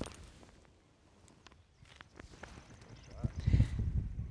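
A gap wedge splashing through the sand of a greenside bunker at the very start, a short sandy hit that quickly dies away, followed by a few faint ticks. Near the end comes a low rumble and a faint voice saying "nice shot."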